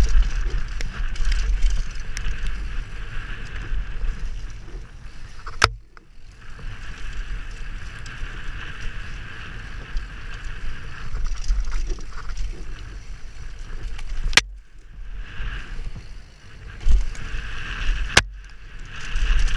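Mountain bike descending a rough dirt trail, heard from a helmet camera: a constant rumble and rattle from the bumpy ride with wind on the microphone. Two sharp clicks, about six seconds in and again near fourteen seconds.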